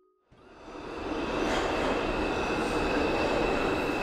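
Subway train passing: a rumble that builds over about a second and then holds steady, with a steady high squeal running through it.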